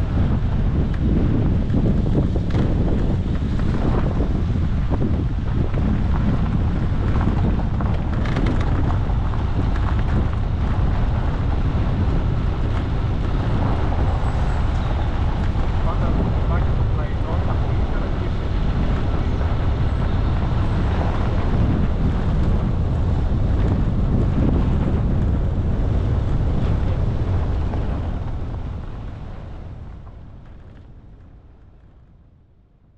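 A vehicle driving along a gravel forest road: steady engine and tyre rumble, with wind buffeting the microphone. The sound fades out near the end.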